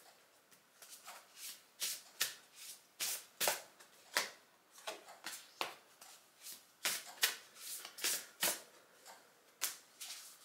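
An oracle card deck being shuffled by hand: short, irregular strokes of the cards, about two a second.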